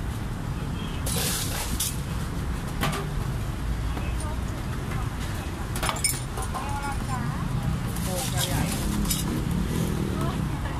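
Busy street-stall ambience: a few sharp clinks of stainless steel cups and spoons over a steady low traffic rumble, with voices in the background.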